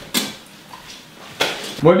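Two sharp clinks of tableware on a kitchen counter about a second apart, each ringing briefly: a metal teapot and tea glasses being set down and handled.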